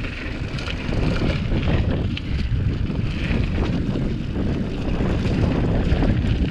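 Wind buffeting the action camera's microphone over the rumble of a hardtail cross-country mountain bike rolling fast down a loose gravel and rock trail, with scattered clicks and rattles from stones and the bike.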